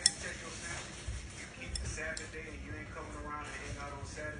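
A sharp click right at the start, then a couple of light clinks as a small child's hand reaches into a bowl. Voices murmur in the background in the second half.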